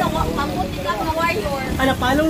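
Several people talking and calling out over one another, with a steady low rumble underneath.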